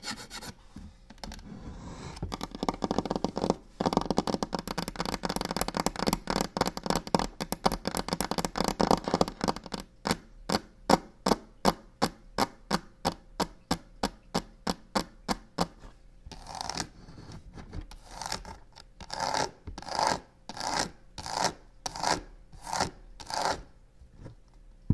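Long fingernails scratching fast on a textured box, then tapping in a quick, even run of about four taps a second, then slower scratching strokes about two a second near the end.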